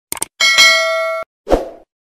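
Subscribe-button sound effect: a quick mouse click, then a bright bell chime that rings for under a second and cuts off abruptly, followed by a short low thump.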